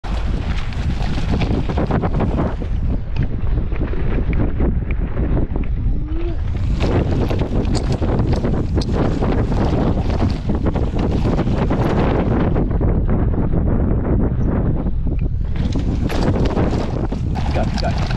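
Wind rushing over an action camera's microphone on a fast mountain-bike descent, with the tyres on a dry dirt trail and frequent rattles and knocks from the bike. The high hiss eases twice, around three and thirteen seconds in, then comes back.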